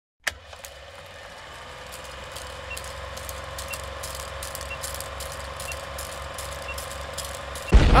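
Intro countdown sound effect: a steady low hum with scattered crackling clicks and a short faint beep once a second, growing slowly louder. A loud voice breaks in just before the end.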